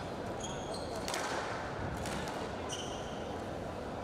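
Squash rally sounds on a court: a sharp ball strike about a second in, with short high-pitched squeaks of court shoes on the wooden floor.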